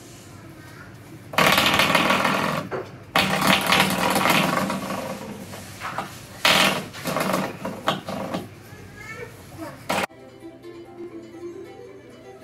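A spring doorstop being flicked by hand, twanging with a buzzing rattle three times, each twang ringing out for a second or two.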